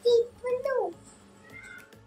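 A toddler's high voice: three short vocal sounds in the first second, the last one rising and then falling in pitch.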